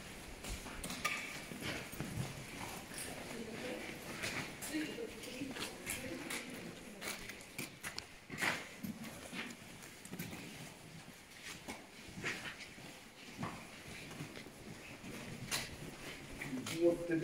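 Footsteps on the hard floor of a concrete tunnel: a string of irregular knocks and scuffs, with faint voices in the background.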